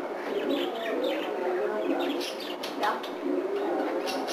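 Birds calling: repeated low cooing notes with higher short chirps, and one quick rising call about three seconds in.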